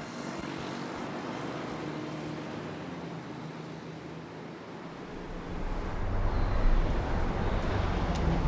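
Vehicle noise: a steady hiss, then a low rumble building up from about five seconds in, as of a vehicle approaching.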